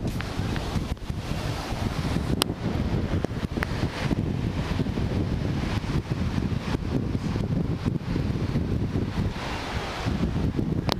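Wind buffeting the camera microphone, a steady low rumbling flutter, with two short clicks about two and a half and three and a half seconds in.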